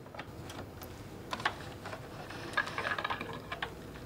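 Light, irregular clicks and ticks from a sewing machine and the fabric being handled as a buttonhole is finished, with a quick run of ticks in the second half.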